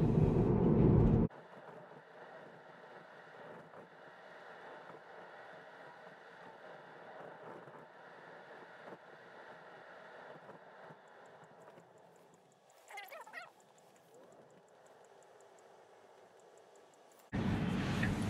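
Road and tyre noise inside a moving Tesla's cabin. It cuts off abruptly after about a second, leaving only a faint hum with one brief warbling sound near the middle, and comes back abruptly just before the end.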